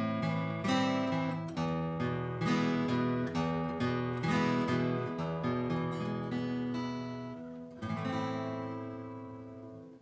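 Acoustic guitar strummed, one chord about every second, working through the beginner shapes A minor, A minor seven (third finger lifted) and E. The last chord, about eight seconds in, is left to ring and fade away.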